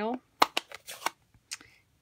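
Cardstock pieces being handled and shuffled on a craft desk: a few sharp paper taps and short rustles in the first second and a half.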